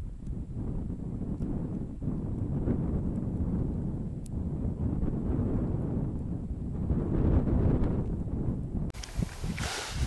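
Wind buffeting the microphone: a low rumbling noise that rises and falls in gusts.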